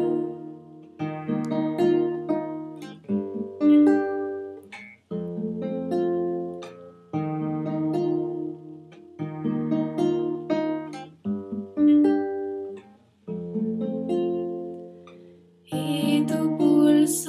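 Acoustic guitar playing an instrumental passage of plucked chords, the notes of each chord sounding one after another, with a new chord about every two seconds.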